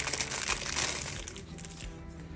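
Clear plastic sleeve crinkling and crackling as a stack of waterslide decal sheets is handled in it, busiest in the first second and a half. Soft background music comes in near the end.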